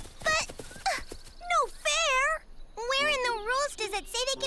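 High-pitched, wordless cartoon voices: a couple of short rising chirps, then a run of warbling, wavering calls.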